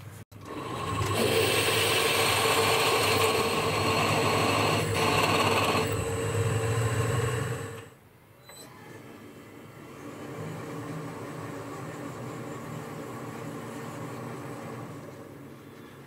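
Boxford lathe running while a twist drill in the tailstock bores the tapping hole in the end of the chucked workpiece. The sound is loud and steady for about eight seconds, cuts off suddenly, and is followed by a quieter steady machine hum.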